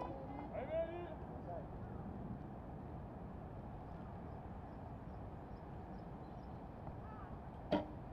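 Faint steady outdoor ambience, then near the end a single sharp snap as a recurve bow's string is released and the arrow is shot.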